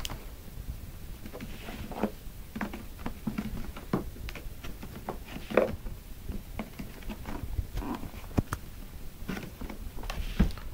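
A sealed cardboard box being turned over and handled: scattered light taps, scrapes and rustles of fingers on cardboard, with sharper knocks about five and a half and eight and a half seconds in.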